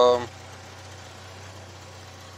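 Car engine idling: a faint, steady low hum.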